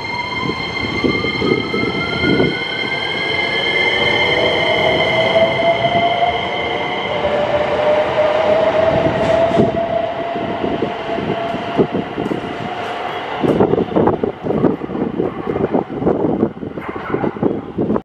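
JR West 227 series electric train accelerating away from a station: its inverter-driven traction motors give a whine that rises steadily in pitch over the first several seconds, with a second, slower-rising tone after it. Irregular knocking and clattering of the wheels on the rails runs underneath and grows busier near the end.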